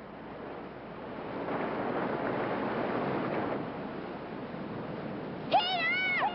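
Rushing water of a rocky mountain stream, a steady hiss that swells for a couple of seconds in the middle. Near the end, a high voice calls out.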